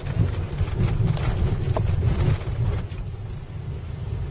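Car tyres bumping over the rails of a railroad crossing: a quick, uneven run of knocks and rattles through the first three seconds, heard inside the cabin over steady road rumble.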